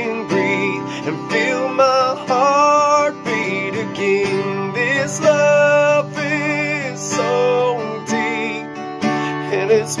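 Man singing a slow worship song with vibrato, accompanied by a strummed acoustic guitar.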